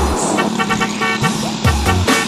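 Vehicle horn sounding a rapid run of short toots, over background music.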